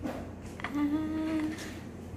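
A voice humming one steady note for about a second, starting just over half a second in.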